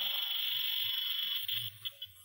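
A pause with a steady high-pitched whine over faint room tone; the whine drops away about one and a half seconds in. It is typical of the noise of an old video-tape recording.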